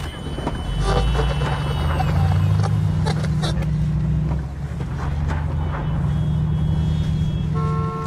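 Car engine and road noise heard from inside a moving car's cabin: a steady low hum that swells about a second in and eases slightly around halfway.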